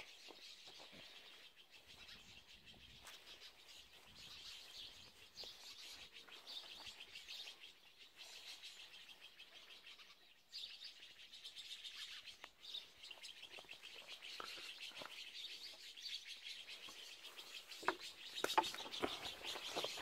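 Many small birds chirping and twittering together in a steady, faint chorus, with a sharp click near the end.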